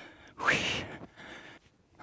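A woman breathing out hard during cardio exercise: one strong, noisy puff of breath about half a second in, then a fainter breath. She is getting out of breath from the exertion.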